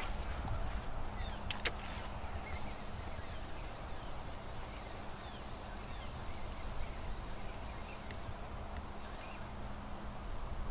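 Open-air lake ambience: low wind rumble and a faint steady low hum, with faint scattered bird chirps. Two sharp clicks come about a second in, from the spinning reel just after the cast.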